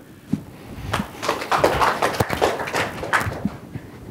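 Scattered clapping from a small lecture audience welcoming a speaker. It starts about a second in and fades out before the end.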